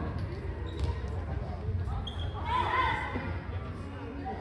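A handball bouncing and thudding on a sports-hall floor, echoing in the large hall, with players calling and shouting loudest a little after halfway.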